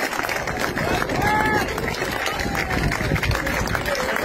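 Crowd of protesters shouting and cheering, with one drawn-out shout about a second in, over a low rumble.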